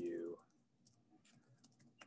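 Faint keystrokes on a computer keyboard: a quick run of soft clicks as a word is typed.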